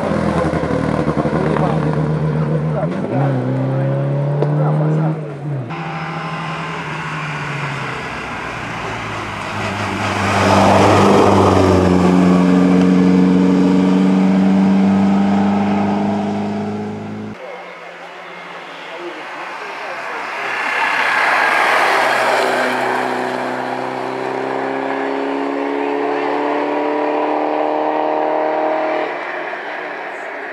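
Skoda Sport racing car's four-cylinder engine pulling hard uphill. Its note climbs steadily in pitch and drops back at the gear changes, and the sound jumps abruptly twice between passes.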